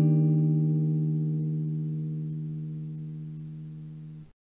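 A single low plucked-string note, the closing note of a short intro jingle, ringing on and slowly fading away.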